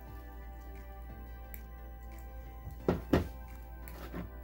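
Soft steady background music, with two knocks close together about three seconds in as a toy dig block is set down on a table.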